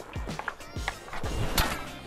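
Hockey stick striking a puck with one sharp crack about one and a half seconds in, over skate blades scraping on ice. Background music with a steady beat runs underneath.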